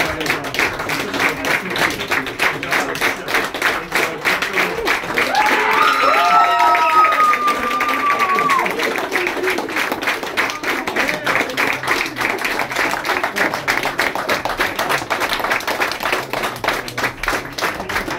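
Club audience clapping steadily after a song, with cheering and a long whoop rising over the applause about five seconds in.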